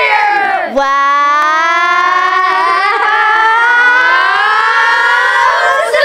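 Group of children shouting together: a brief shout, then one long held shout lasting about five seconds, its pitch slowly rising.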